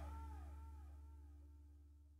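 Background music fading out: a repeating swooping electronic echo dies away over a low hum, reaching near silence about a second in.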